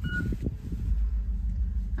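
A short electronic beep right at the start, over a steady low background rumble.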